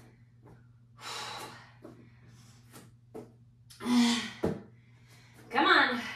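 A woman breathing hard and grunting with effort while holding a plank: a heavy exhale about a second in, then a strained grunt about four seconds in, followed at once by a thump on the mat, and a groan near the end.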